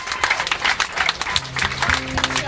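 Audience applauding with dense, irregular clapping. About halfway through, low acoustic guitar notes start to ring underneath the clapping.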